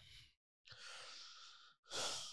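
A person's faint breath close to a microphone, from about half a second in to about a second and a half in, then a louder breath near the end.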